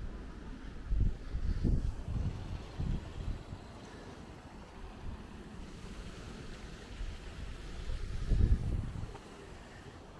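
Wind buffeting the camera's microphone in gusts, from about a second in until about three seconds in, and again more strongly near the end.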